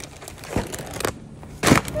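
Packaging crinkling and rustling as groceries are handled, with a few short knocks; the loudest comes near the end.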